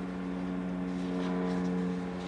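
A steady, low machine hum made of several held tones.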